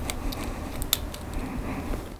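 Split-ring pliers working a treble hook off its steel split ring: light handling rustle with a few small, sharp metal clicks, the clearest about a second in.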